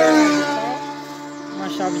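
A man's voice trailing off over a steady hum held at one unchanging pitch, with a quieter pause in the second half.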